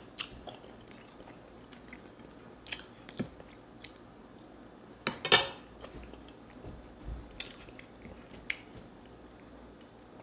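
Close-up mouth sounds of someone chewing and gnawing meat off a turkey neck bone: wet smacks and small clicks at irregular moments, with one much louder burst about five seconds in.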